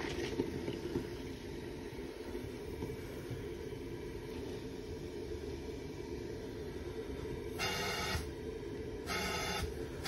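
Wet/dry vacuum pulling on an air conditioner's condensate drain line through the held trap, heard as a steady low rumble, with two short hissing bursts near the end.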